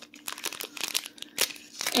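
Clear plastic sample bag crinkling as it is handled, a run of irregular crackles.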